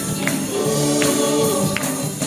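Live gospel singing: voices hold long notes over backing music. There are two short percussive hits, once near the start and once near the end.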